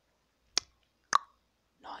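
Two short, sharp pops about half a second apart, followed by a faint breath near the end.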